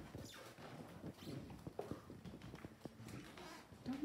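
Footsteps on a hardwood floor: soft, irregular knocks and shuffles of people walking, with faint talk in the background.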